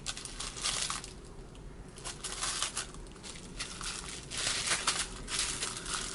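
Clear plastic wrapping crinkling and crackling as a small planter is unwrapped by hand. The crinkling comes in irregular spells, with a short lull about a second in and louder handling in the last couple of seconds.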